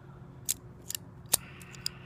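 A string of about six sharp metallic clicks and snips from a small ringed metal tool, scissor-like, being worked in the fingers. The loudest click comes a little past the middle.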